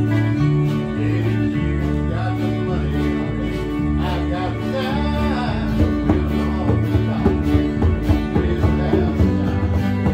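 Small amateur band playing a song live: an electric bass line stepping between notes under acoustic and electric guitars and a keyboard. A wavering melody line rises above it in the middle, and the strums grow more accented in the second half.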